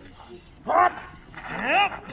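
Two sharp, rising fighting shouts from sword-fight performers: a short one just after half a second and a longer, higher one that rises and falls back near the end.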